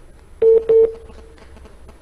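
Two short telephone beeps at the same pitch, a quarter second apart, coming over the studio phone line: the caller's call has been cut off.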